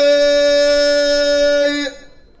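A man's voice holding one long, steady sung note through a microphone in tandamt-style Amazigh chanted poetry. The note cuts off sharply just before the end.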